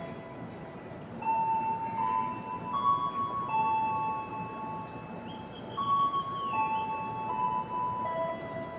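A slow melody of held, chime-like electronic notes stepping between a few pitches.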